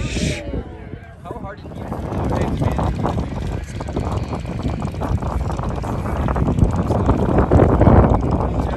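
Many motorcycle engines running in a stopped line of traffic, growing louder toward the end, with people talking.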